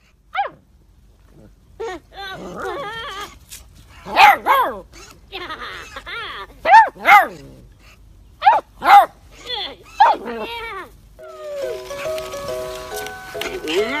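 Beagle puppy barking at a plush toy in a string of short, high-pitched yaps, several of them coming in quick pairs. About eleven seconds in the barking gives way to music with steady held notes.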